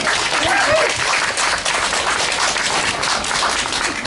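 Audience applauding: many hands clapping steadily in thanks to the musicians.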